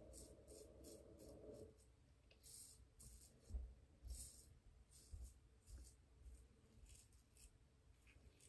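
Faint, short scraping strokes of a Chiseled Face Legacy double-edge safety razor cutting stubble on the cheek, a few strokes a second, with a couple of soft thumps midway.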